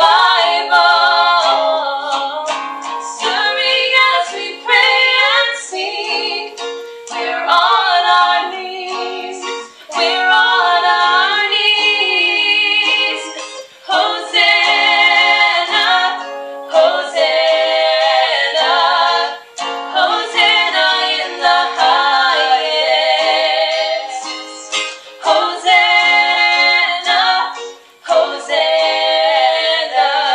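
Female voices singing a song to a strummed acoustic guitar, thin and without bass, as heard through a video call's speaker.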